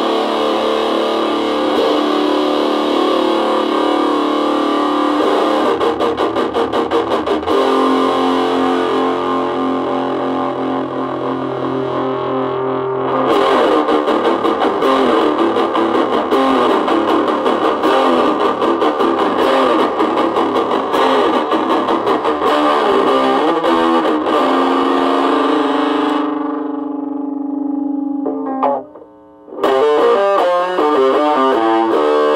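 Distorted electric guitar, an old Stratocaster played through a 1980s Peavey Decade 10-watt 1x8" combo fitted with a new Celestion speaker. Held, ringing chords change about seven seconds in. From about thirteen seconds in comes busier, choppier playing, which thins to a single held note near the end and cuts out briefly before the playing starts again.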